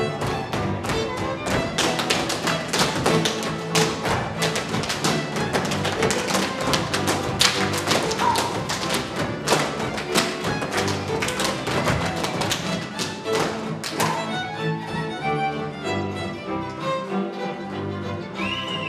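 Transylvanian men's dance music led by a fiddle and strings, with the dancers' boots stamping and slapping in quick, dense rhythm over it. About three quarters of the way through the stamping stops and the fiddle music carries on alone.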